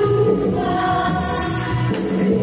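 Yamaha stage piano played with both hands, chording the accompaniment to a gospel worship song.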